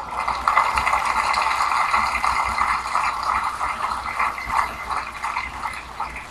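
An audience applauding: a dense patter of many hands clapping that starts sharply and eases off slightly towards the end.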